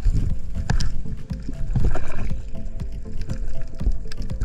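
Underwater sound heard through a camera housing while a diver handles a speared fish: a low, muffled rumble of water movement with irregular knocks and clicks. A faint steady hum runs underneath.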